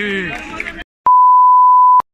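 A loud, steady electronic beep on one unchanging high pitch, starting about a second in after a brief silence, held for about a second and then cut off sharply.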